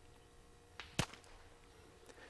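Quiet, with one short sharp crack about a second in, just after a fainter tick.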